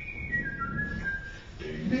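A whistled melody in the recorded song: a few held high notes stepping down, fading out after about a second. The lower accompaniment comes back in near the end.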